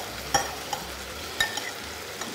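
Pieces of pork sizzling steadily in a hot pan, with a few sharp clicks of a metal spoon against a jar of fried tomato as it is scooped out.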